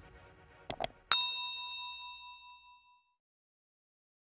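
Subscribe-button animation sound effects: two quick clicks, then a bright notification-bell ding that rings out and fades over about a second and a half. Electronic music fades away underneath at the start.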